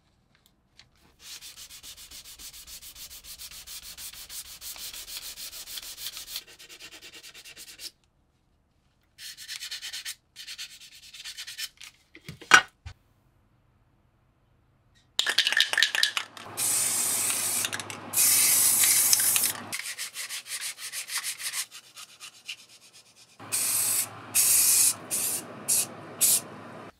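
A plastic spreader scrapes filler putty across a rusted steel plate in a quiet, steady rubbing. A sharp click comes about halfway through. Then an aerosol can of filler primer hisses loudly in long spray bursts, with shorter bursts near the end.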